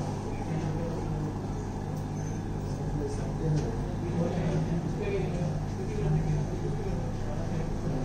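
Small AC induction motor running steadily with a low hum, its speed set through a TRIAC phase-control board.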